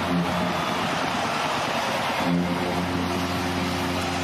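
Arena goal horn sounding in long, steady low blasts over a cheering crowd, marking a home-team goal; the horn breaks off briefly about half a second in and comes back about two seconds in.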